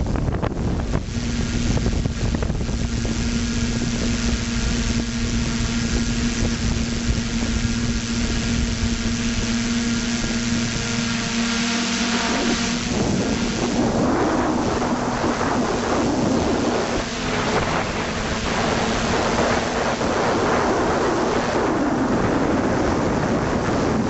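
FPV quadcopter's electric motors and propellers humming at a steady pitch, heard through the onboard camera's microphone with wind rushing over it. About halfway through, the hum fades under louder, rougher wind noise.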